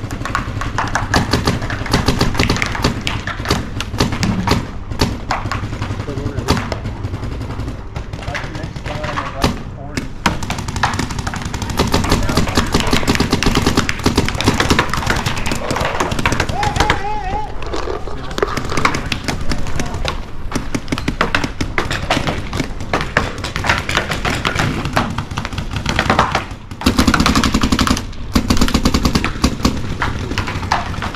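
Paintball markers firing in rapid strings of shots throughout.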